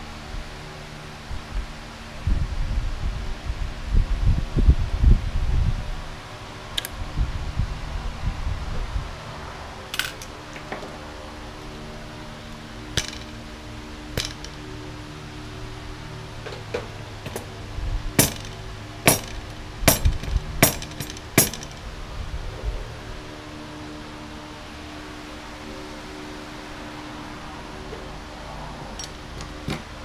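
Metal carburetor bank and hand tools being handled on a workbench: low rumbling handling knocks in the first several seconds, then scattered sharp metallic clinks, with a quick run of five or six about two-thirds of the way through. Soft background music plays underneath.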